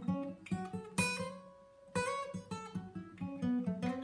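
Acoustic guitar playing a scale exercise one note at a time in a position on the neck. A single held note rings out and fades for about a second near the middle, then the notes carry on at a quicker pace.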